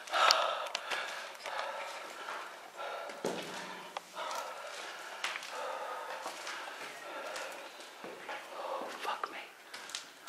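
Quiet, indistinct voices and breathing, with a few sharp clicks and knocks.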